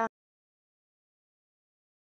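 Dead silence, with no sound at all, just after a spoken line ends at the very start.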